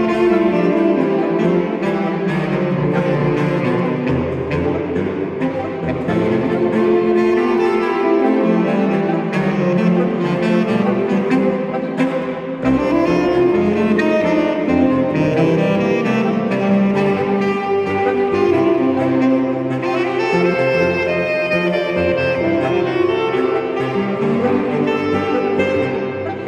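Saxophone quartet playing a piece, four saxophones in harmony over a low line from a large bass-register saxophone whose notes change every few seconds.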